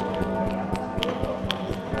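A clock bell tolling for midnight, its tones held steady, with many quick, irregular taps over it.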